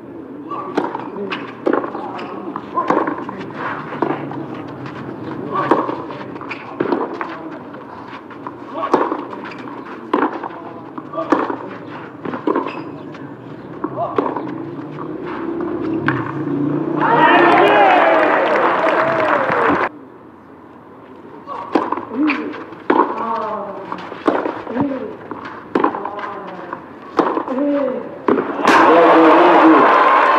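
Tennis ball struck back and forth in rallies on a clay court, sharp racket hits about a second apart. A loud burst of crowd noise with voices comes partway through, and crowd cheering and applause rise near the end.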